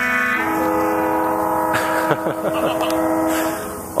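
Several ships' horns in the bay sounding long, overlapping blasts to mark the New Year. One held chord gives way to another about half a second in, then fades near the end.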